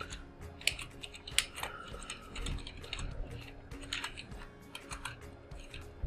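Typing on a computer keyboard: a run of irregular key clicks, a few of them louder than the rest.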